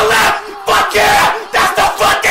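A man yelling and screaming in excitement, a run of loud, closely spaced shouts.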